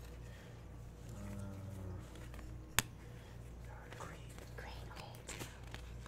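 Faint whispering over a low steady hum, with one sharp click a little under three seconds in and a few lighter clicks of Uno cards being handled on a wooden floor in the second half.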